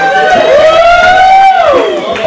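Two long, high-pitched vocal whoops, overlapping, each sliding up at its start; the second falls off near the end. They are cheering whoops at the close of a song.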